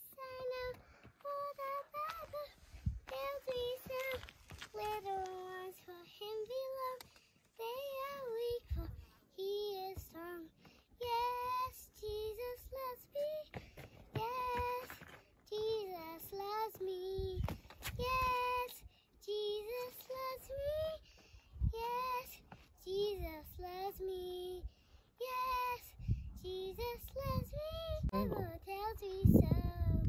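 A young girl singing a song alone, without accompaniment, in a high voice, phrase after phrase with short breaths between them.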